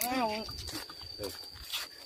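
A person's voice calling out briefly at the start, then quieter outdoor background with a faint, steady high whistle throughout.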